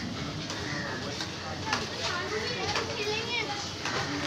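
Background chatter of several voices at once, including high children's voices, with a few short knocks in the first half.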